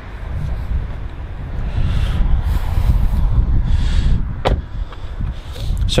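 Rumbling handling and wind noise on a handheld microphone as the person filming climbs out of a car, with one sharp click about four and a half seconds in.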